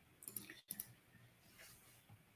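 Near silence with a few faint, quick clicks in the first second.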